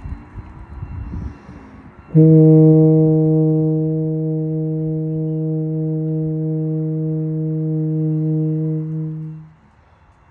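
E-flat tuba playing one long sustained note, a long-tone warm-up whole note. It starts with a firm attack about two seconds in, holds steady for about seven seconds, then stops.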